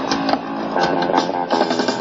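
Punk rock band playing live: electric guitar chords over a drum kit, with sharp drum hits cutting through.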